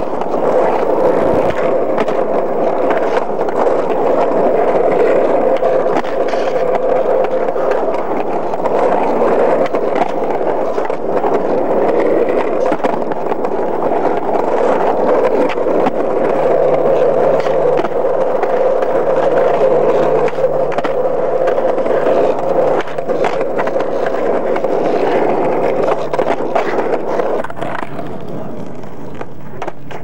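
Skateboard wheels rolling and scraping on rough asphalt blacktop, a steady gritty rumble with frequent small clicks and knocks from the board and trucks as the skater turns and spins. The sound drops off a couple of seconds before the end.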